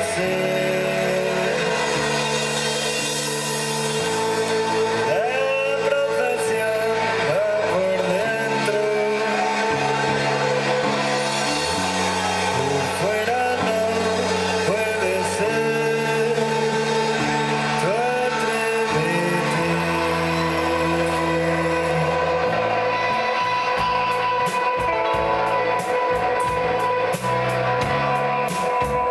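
Live rock band playing: a male voice singing over electric guitars and drums. About three quarters of the way through the singing stops and the guitars carry on with sharp drum hits.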